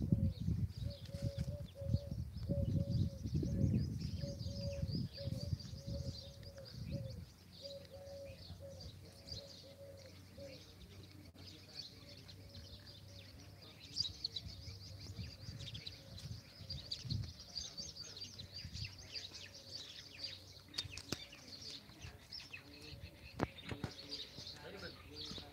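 Small birds chirping continuously. For the first seven seconds a low rumble sits on the microphone, and for the first ten seconds a low steady tone repeats in short segments.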